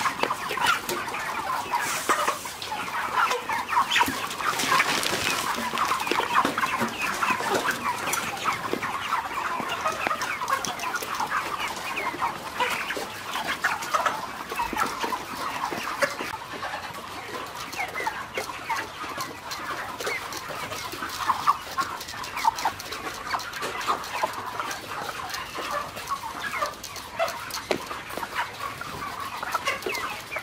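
A flock of six-week-old Ross 308 broiler chickens clucking steadily, with many short calls overlapping throughout and frequent light clicks among them.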